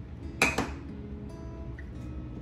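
Two quick hard clacks close together, a clear acrylic stamp block knocking against a painted wooden block during stamping, over soft background music.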